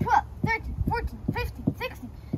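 Speech only: a child counting aloud, one short number-word after another about every half second.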